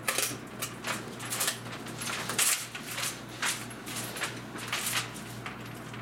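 A hinged pegboard display case being unlatched and swung open, its hanging jewelry and metal pegboard hooks jangling in a string of sharp clicks and rattles.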